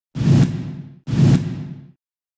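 A news channel's logo-sting sound effect: two identical whooshes about a second apart, each starting suddenly and dying away within the second.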